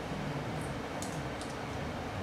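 Steady room noise: a hiss with a faint low hum, and a few light ticks around the middle.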